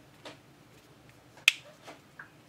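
Sharp plastic clicks as the back cover of an OUKITEL C21 smartphone is pressed along its edge and its clips snap into place. A faint click comes near the start, a loud one about one and a half seconds in, and a smaller one just after.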